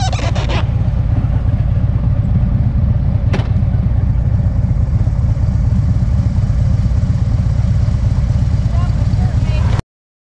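Motorcycle engine idling with a steady low rumble, with a single sharp click about three and a half seconds in. The sound cuts off suddenly just before the end.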